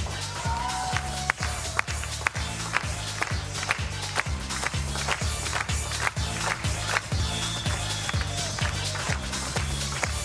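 Upbeat game-show bumper music with a steady driving beat, about two beats a second, over a repeating bass line.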